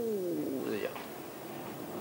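A single short vocal sound that falls in pitch over about a second, then quiet room tone.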